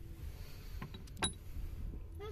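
A few light handling clicks about a second in, the sharpest with a brief high ring, over a low steady rumble.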